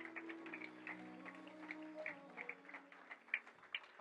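Soft, held band chords fading out over the first two or three seconds, with faint scattered handclaps from the congregation.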